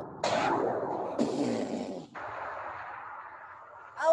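A cartoon cannon-blast 'kaboom': two rushing bursts of noise about a second apart, dying away into a fading hiss.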